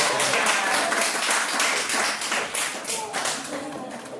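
A small audience clapping, with laughter and voices mixed in; the clapping thins out near the end.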